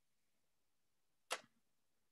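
Near silence broken by one short, sharp click just over a second in.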